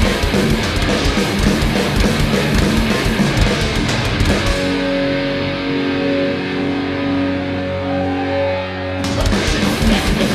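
Thrash metal band playing: fast distorted electric guitar riffing over drums, then about halfway through the drums drop out and a held guitar chord rings on for about four seconds before the full band crashes back in near the end.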